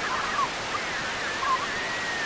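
Analog TV static: a steady, even hiss with faint wavering, warbling tones running through it.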